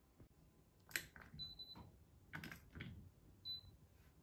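Faint clicks and handling noises, with two short high-pitched beeps, one lasting under half a second and a shorter one near the end.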